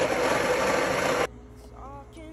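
Breville espresso machine's built-in burr grinder grinding coffee beans into the portafilter, a loud steady whirr that cuts off abruptly about a second and a quarter in.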